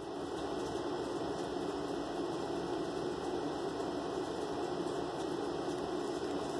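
Steady, even background hum and hiss, with nothing standing out and no change.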